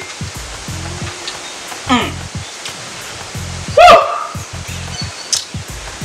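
A man's approving "mm" after sipping his cocktail about two seconds in, then a louder vocal exclamation that rises in pitch near four seconds. Both sit over background music and a steady hiss.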